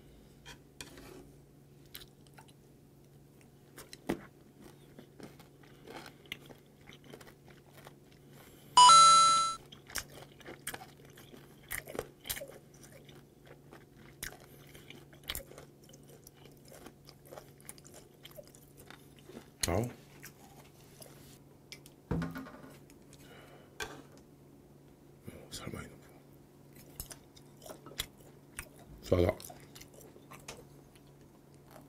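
Close chewing of fermented skate (hongeo): soft wet chewing with crunches, and light clicks of metal chopsticks, over a faint steady hum. About nine seconds in, a short, loud ringing tone cuts in, the loudest sound of the stretch.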